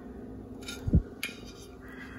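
Faint steady room hum, with one soft low thump about halfway through and a couple of faint light clicks around it, as ceramic plates are handled.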